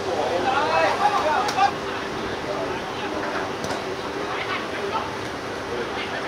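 Footballers shouting and calling on an outdoor pitch during an attack on goal, loudest in the first two seconds, then scattered calls over steady background noise with a faint hum.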